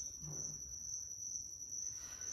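A steady, unbroken high-pitched trill or whine over faint low room hum, with no words spoken.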